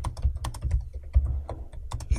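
Typing on a computer keyboard: a quick, irregular run of key clicks over a low rumble.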